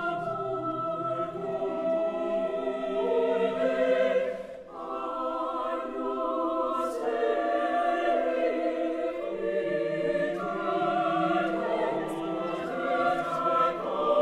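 Mixed chamber choir singing sustained chords with cello accompaniment, with a brief break for breath about four and a half seconds in before the voices re-enter.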